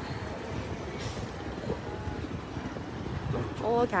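Steady low rumble and hiss of outdoor background noise, with vehicles running somewhere in the yard. A woman starts speaking near the end.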